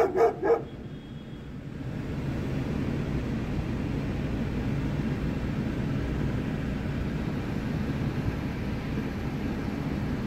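A short laugh right at the start, then a steady low rumble of an idling car engine.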